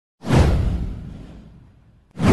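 A whoosh sound effect with a deep low boom under it. It starts suddenly a fraction of a second in, sweeps down in pitch and fades away over about a second and a half.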